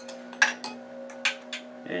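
A few light metal clicks, the loudest about half a second in, as a brass rod and a steel lathe live center are handled and set in a wooden block. A steady low hum runs underneath.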